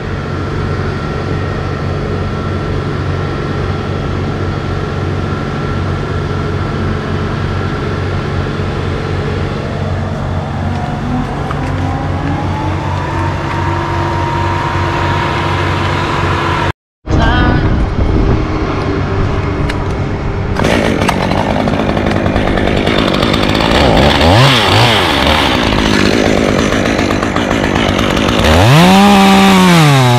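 A steady engine hum with a tone that rises and then holds. After a break, a gas top-handle chainsaw runs and cuts wood, its pitch dropping and rising repeatedly under load near the end.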